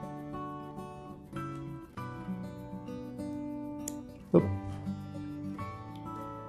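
Background music: acoustic guitar picking a string of notes, with one louder chord struck about four and a half seconds in.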